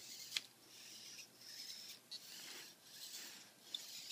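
PhantomX hexapod robot's leg servos whirring faintly in short spells as the legs move, with one sharp click about half a second in.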